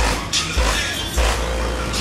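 Loud hip-hop with deep, booming bass notes and sharp hi-hat-like hits, playing on a car sound system.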